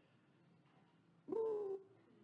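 A quiet pause, then a man's single short cough about a second and a half in. The cough is voiced, with a held, slightly falling pitch.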